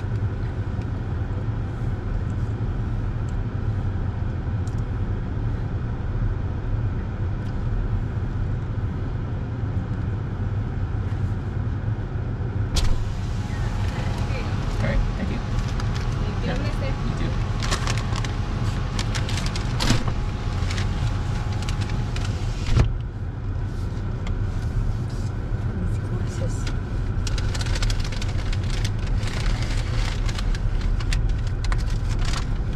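A car's engine idling with a steady low rumble heard from inside the cabin. About 13 seconds in, the driver's window opens onto outside noise and a paper bag rustles as food is handed in. Near 23 seconds a thump is heard and the outside noise drops away.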